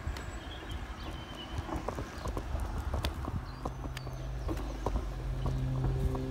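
Footsteps clicking irregularly on a tarmac lane while walking uphill. A low, steady hum comes in about halfway through and grows a little louder toward the end.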